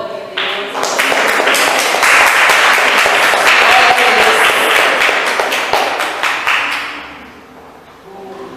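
Congregation applauding: dense clapping that swells within the first second, holds loud for several seconds and dies away near the end.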